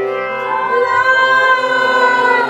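Hindu devotional bhajan singing: voices sing a melody that glides between notes over a steady, held-note accompaniment.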